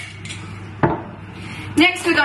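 A single sharp clink from a small glass jar being handled and set down, about halfway through, against a quiet room.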